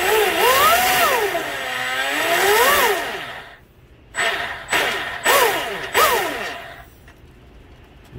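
RC boat's greased flex-shaft drive and propeller spun up on the stand, a motor whine rising and falling in a long rev, then four short blips of throttle. The drive runs smoothly with the strut greased, and the builder says it sounds good.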